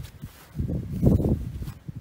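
Low rumbling noise on the microphone that swells about half a second in, peaks around a second in and fades out before the end.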